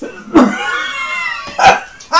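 A man's drawn-out vocal sound lasting about a second with a slowly falling pitch, followed near the end by a short sharp cough.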